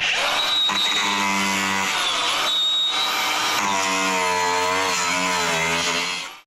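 Cordless angle grinder running and cutting into a fibreglass boat deck: it starts suddenly, with a loud steady whine over a harsh grinding noise, its pitch wavering as the disc bites.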